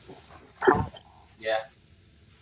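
Brief speech between talkers on a video call: a short falling vocal sound, then a quiet 'yeah'.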